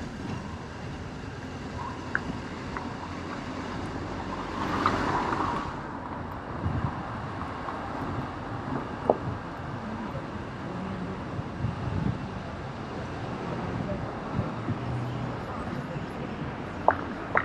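Urban street ambience: a steady wash of road traffic, with a louder whoosh about five seconds in and a few short sharp clicks.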